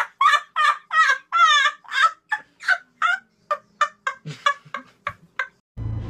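A person's long, high-pitched laugh: a run of short 'ha' bursts about three a second that grows weaker and stops shortly before the end.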